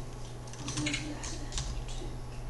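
Typing on a computer keyboard: several separate, unevenly spaced keystrokes over a steady low hum.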